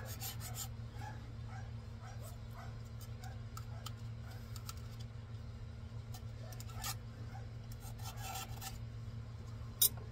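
A metal putty knife scrapes leftover cured resin off a resin 3D printer's build plate in quick strokes that stop about half a second in, followed by a few scattered scrapes and clicks. A dog barks repeatedly and faintly in the distance, over a steady low hum.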